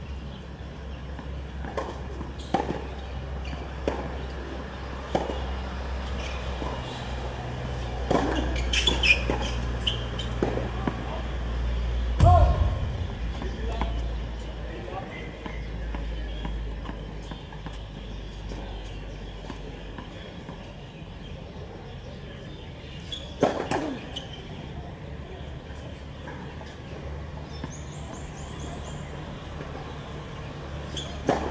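Tennis ball and racket sounds on a hard court: scattered sharp knocks of the ball bouncing and being struck, the loudest about twelve seconds in, with a brief shout from a player. A steady low rumble runs underneath.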